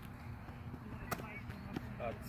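Faint, distant children's voices over a steady low hum, with a sharp click about a second in and a softer one near the end.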